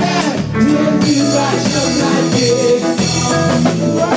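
Live gospel worship music: a women's praise team singing together over a drum kit and band.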